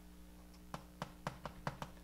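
Chalk tapping and clicking on a blackboard as a formula is written: a quick run of light taps, about six a second, starting about three quarters of a second in, over a faint steady low hum.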